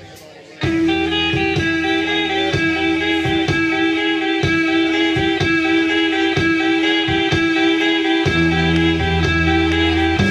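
Live surf rock band with electric guitar, bass and drum kit launching into a song about half a second in: a long held guitar note over a steady drumbeat, with the bass line dropping out midway and coming back in near the end.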